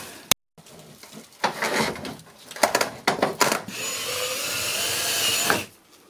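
A few knocks of handling, then a Ryobi cordless drill/driver runs steadily for about two seconds, driving a screw into a steel ceiling panel, and stops shortly before the end.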